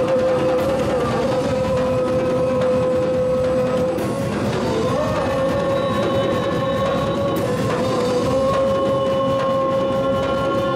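Live worship band playing a slow song: drum kit with a few cymbal crashes, keyboard and electric guitar under one long held note.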